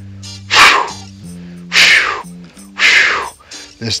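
A man imitating a whitetail deer's alarm blow: three sharp, forceful snorts of breath, about a second apart, over steady background music.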